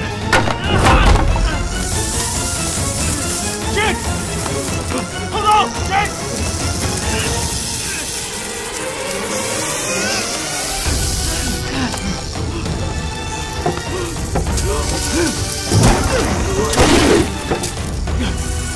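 Film soundtrack: dramatic music mixed with crashing impact effects and short vocal cries, busiest near the start and again near the end.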